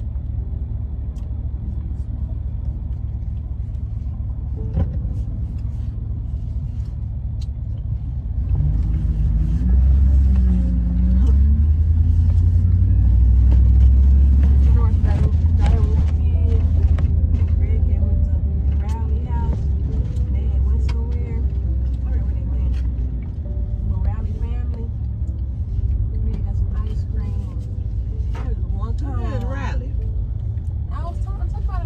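Low, steady rumble of a car heard from inside the cabin while driving. It grows louder about a third of the way in and eases back down some seconds later.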